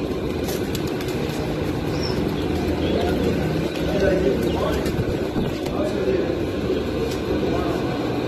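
Domestic pigeons cooing in a crowded loft over a steady low background hum.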